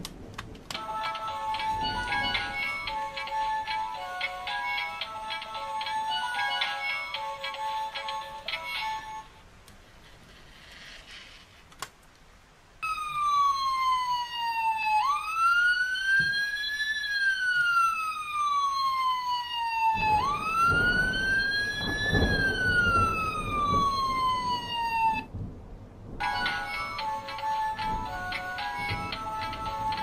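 Electronic sound unit of a Fireman Sam toy ambulance: a short tune of beeping notes, then a siren that rises and falls slowly, about three sweeps, then the tune again.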